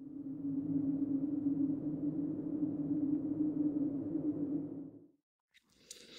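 A low, steady droning tone, an electronic sound effect, that fades in and stops about five seconds in.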